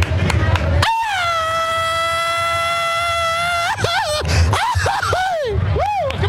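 A man's Mexican grito yelled into a microphone. About a second in comes one long, held, high cry, then a run of short yelps that swoop up and down in pitch. Crowd chatter is underneath before the cry begins.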